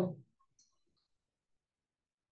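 The tail of a spoken word, then near silence with a couple of faint, tiny ticks.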